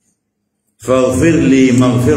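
Silence, then about a second in a man begins reciting an Arabic supplication in a chanted, drawn-out voice.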